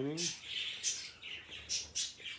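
Small birds chirping in the background, short high-pitched calls several times a second, just after a man's voice trails off at the start.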